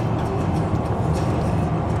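Steady road and engine noise inside a car's cabin while driving at highway speed, a low rumble with an even hiss above it.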